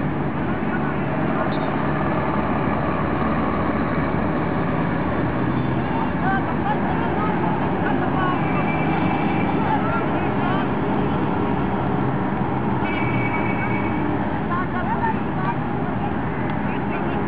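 Steady outdoor din of traffic noise with scattered distant shouting voices across a football pitch. Two brief high steady tones come about eight and thirteen seconds in.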